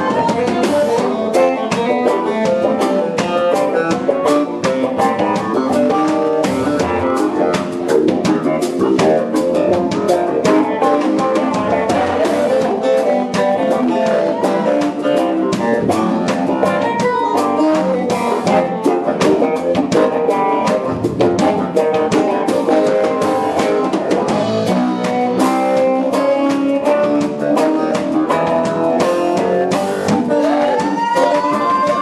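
Live funk band playing, an electric guitar up front over a drum kit.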